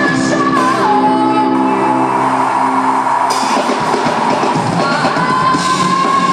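A live rock band of drum kit, electric guitars and a female lead vocal, heard in a large hall. The singer holds long notes near the start and again near the end, with denser full-band playing in between.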